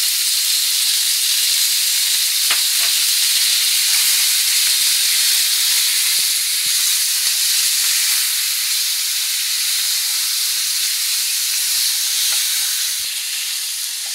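Boneless chicken pieces frying in hot oil with onions in a nonstick frying pan, a steady loud sizzle as the raw meat sears, easing slightly near the end.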